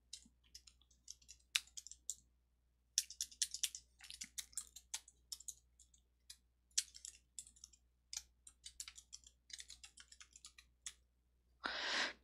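Faint keystrokes on a computer keyboard: typing in short, irregular runs of clicks.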